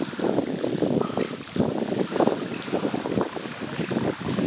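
Bicycle wheels swishing and splashing through shallow floodwater a few centimetres deep, with wind noise on the microphone.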